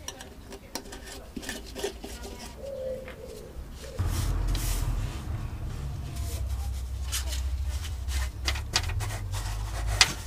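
Light clinks and knocks of a tin of Waxoyl wax oil and a plastic tub being handled, then, from about four seconds in, small scratchy brush strokes of wax oil being applied to a car's underbody over a low steady rumble.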